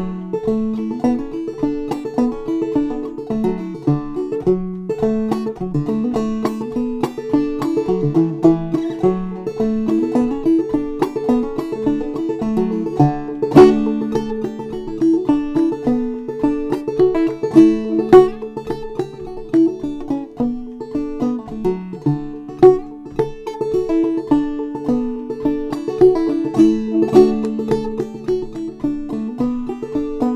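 Solo banjo played clawhammer style: a lively old-time fiddle tune picked in a steady rhythm, with one high drone note sounding again and again under the melody.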